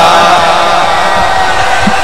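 A man's chanted lament through a public-address system, trailing off in a long held note that fades with the hall's reverberation.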